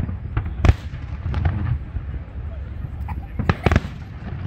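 Aerial firework shells bursting. The loudest bang comes under a second in and a quick run of bangs follows near the end, over a steady low rumble.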